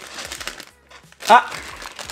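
Crinkling of a puffed-up plastic blind-bag packet being squeezed and felt by hand, with a short pause in the middle. A brief spoken "Ah" comes about a second and a half in.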